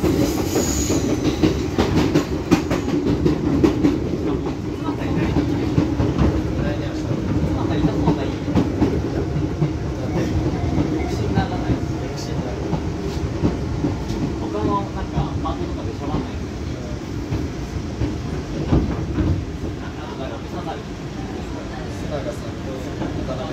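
Fujikyu Railway train running on the rails, heard from inside the passenger car: a steady rumble with the wheels clicking over rail joints, the clicks thinning and the sound easing as the train slows into a station.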